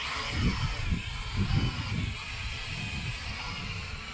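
Small toy quadcopter (P7 Pro Max) lifting off: its motors and propellers spin up with a burst of hiss, then settle into a steady, slightly wavering whine, over a low gusty rumble.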